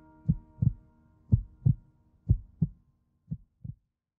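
Heartbeat sound effect: pairs of low thumps about once a second, the last pair fainter, over a faint held tone that dies away about halfway through.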